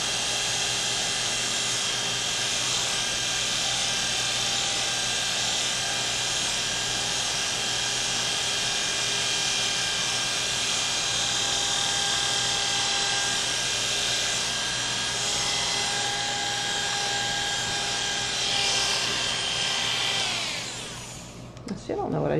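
Electric hair clippers running with a steady hum as they cut short hair. About two seconds before the end they are switched off, and the hum slides down in pitch as the motor winds down.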